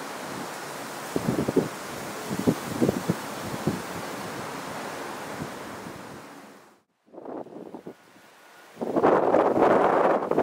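Wind buffeting the camera microphone in irregular gusts over a steady outdoor hiss. The sound drops out briefly about seven seconds in, and heavy wind rumble starts again near the end.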